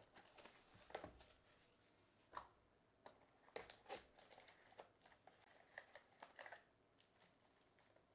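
Faint crinkling and tearing of plastic shrink wrap being stripped off a trading-card box, then foil card packs rustling and clicking as they are lifted out and stacked, dying away near the end.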